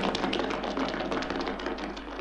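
Studio audience applause: a dense patter of many hand claps.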